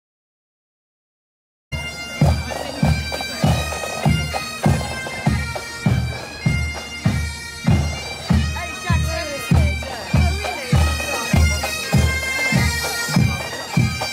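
Bagpipes playing a marching tune, with a drum beating steady time at a little under two strokes a second. The music starts suddenly about two seconds in.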